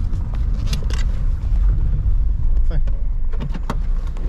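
Car running, heard from inside the cabin as a steady low rumble, with a few short clicks.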